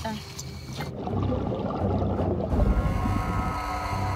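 A muffled low rumble swells from about a second in, then gives way to a droning, sustained music score.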